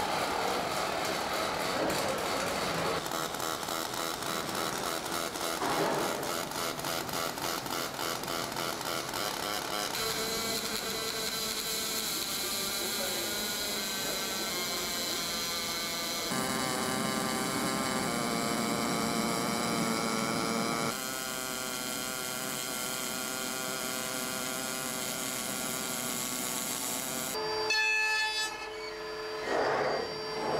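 Car body plant noise from aluminium body assembly: welding and machinery, a mix of hiss and several steady tones that changes abruptly every few seconds.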